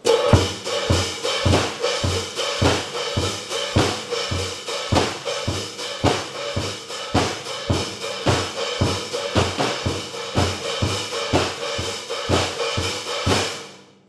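CB Drums acoustic drum kit playing a disco-style beat: a steady bass drum about twice a second under continuous hi-hat and snare strokes. The beat stops shortly before the end.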